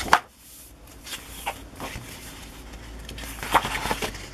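Sheets of a scrapbook paper pad being turned and handled: a crisp paper flap right at the start, then a few soft rustles and taps of paper.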